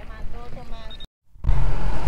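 Low rumble of a fishing boat under way, with a voice talking over it in the first second. The sound cuts out completely about a second in, as at an edit, and comes back half a second later as a louder, steady low rumble.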